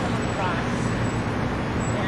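Steady road traffic noise from passing vehicles, with a faint voice about half a second in.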